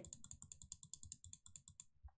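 Faint, rapid tapping of computer keyboard keys, about ten clicks a second, stopping just before the end.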